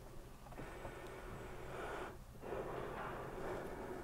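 A person breathing faintly close to the microphone: two long breaths, each about a second and a half, with a short pause between them.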